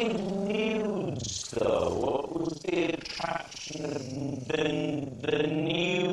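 A man talking in an altered, distorted voice, so that the words do not come through clearly.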